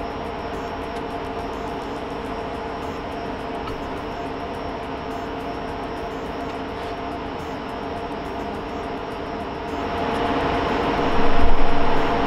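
Rack server's cooling fans running steadily with a whine of several tones while the machine boots, growing louder about ten seconds in.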